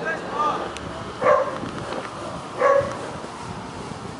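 A dog barking twice, with short loud barks about a second and a half apart, over outdoor background noise.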